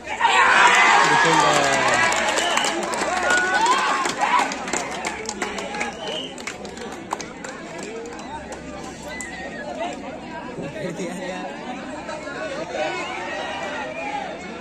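Crowd of spectators shouting over one another as a kabaddi raid ends in a tackle, loudest at the start, then dying down into chatter.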